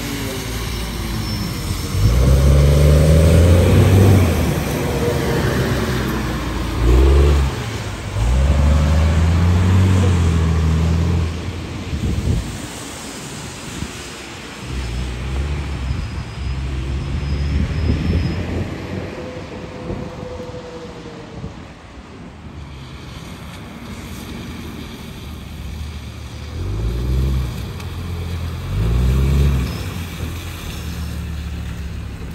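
Low-floor diesel transit bus driving on a wet road. The engine revs up in several rising pulls as the bus accelerates and shifts, drops back and fades around the turnaround, then pulls hard again as it comes back near the end, with tyre hiss from the wet pavement throughout.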